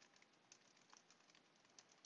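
Faint computer keyboard typing: a quick, irregular run of light key clicks.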